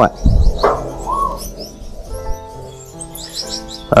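Caged Gouldian finches giving short, high chirps, with faint instrumental background music coming in about halfway through.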